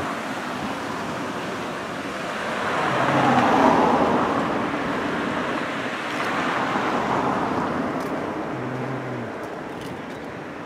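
Road traffic: cars passing by on the street alongside, a steady rush that swells to its loudest about three and a half seconds in, rises again around seven seconds, then fades.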